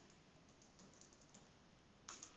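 Faint computer keyboard typing: a few soft keystrokes entering code.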